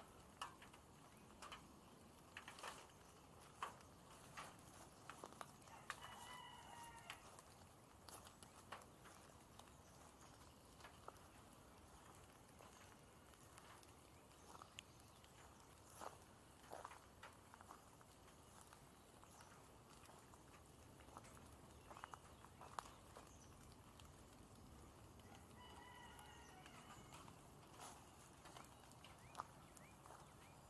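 A chicken calling twice, faint, once about six seconds in and again near the end. Scattered faint ticks and clicks run underneath.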